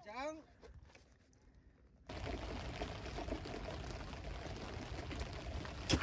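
Steady hiss of rain falling on the lake surface, starting abruptly about two seconds in, after the end of a man's shout and a moment of near silence.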